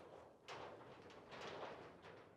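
A man breathing out during a deep kneeling hip-flexor stretch: a soft hiss that starts suddenly about half a second in, swells again briefly and fades.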